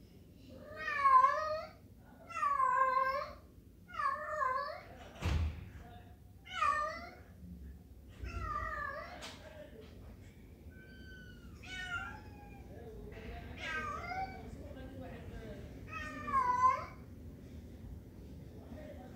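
A domestic cat meowing over and over, about nine separate high-pitched, drawn-out meows, each rising and falling in pitch. A single sharp knock about five seconds in.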